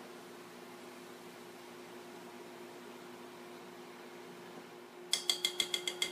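A wire whisk beating batter in a glass mixing bowl, clinking rapidly against the glass with a ringing tone, about nine strokes a second, starting about five seconds in. Before that there is only a faint steady hum from the countertop induction cooktop heating a pot of oil.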